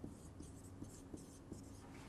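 Dry-erase marker writing on a whiteboard in a few faint, short strokes.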